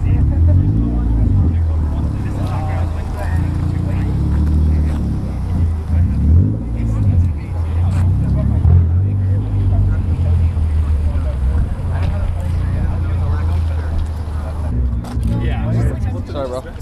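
A car engine running, its low pitch rising and falling a few times.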